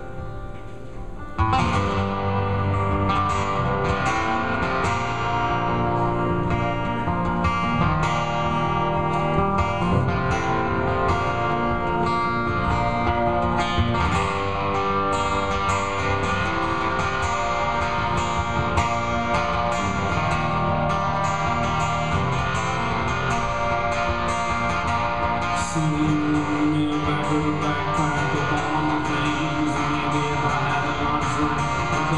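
Solo acoustic guitar played live, an instrumental passage between verses: a quiet ringing chord gives way about a second and a half in to loud, fast, continuous strumming.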